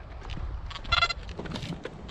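Metal detector tone: a short beep about a second in, just after a briefer blip. The detectorist puts it down to a second metal detector nearby, interfering with his own.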